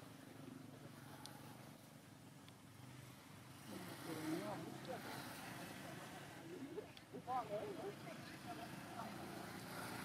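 Faint voices talking in the background, loudest in two stretches in the middle, over steady outdoor ambience.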